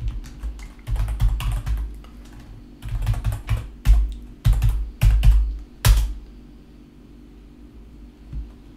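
Typing on a computer keyboard: irregular bursts of key clicks with dull thuds, stopping about six seconds in.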